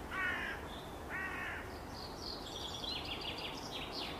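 Birds outdoors: two short calls about a second apart, then a quick run of higher chirping over the last second and a half.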